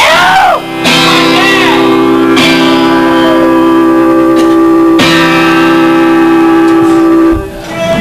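A guitar chord struck and left ringing, struck twice more about two and a half seconds apart, then stopped short near the end.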